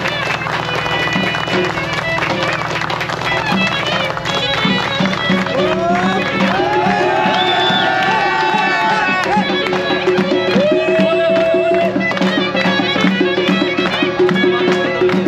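Traditional wedding music: a reedy, bagpipe-like wind melody gliding over a held drone and a steady beat, with a crowd clapping and talking.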